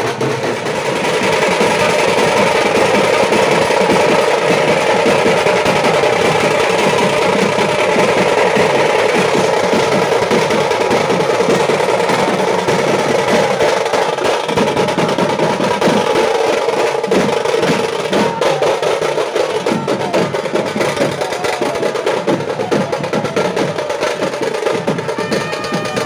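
Hand-beaten procession drums played in a fast, continuous roll, loud and unbroken.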